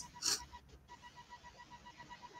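A short breathy noise about a third of a second in, then near silence with only a faint steady high tone.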